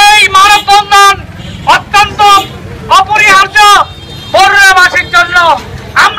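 A man shouting loudly through a handheld megaphone in short, clipped phrases with brief pauses between them.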